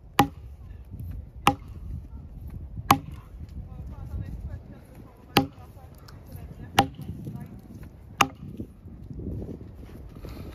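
Axe blows bucking a log: six sharp strikes, each with a brief ring, three evenly spaced, a short pause, then three more.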